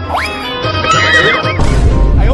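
A horse whinny, a rising cry followed by a wavering, trilling pitch, played over background music, with a deep low rumble joining near the end.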